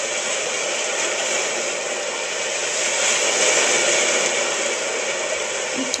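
Steady rushing noise of sea surf and wind, a little louder about halfway through.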